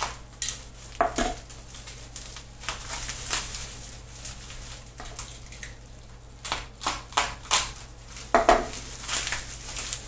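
Bubble wrap and plastic crinkling and crackling in short, irregular bursts while a razor knife slices through packing tape, with the loudest crackles about a second in and near the end.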